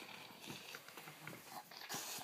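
A toddler's bare feet scuffing on carpet and a pillow rustling as she carries it: a few soft, scattered knocks and scuffs.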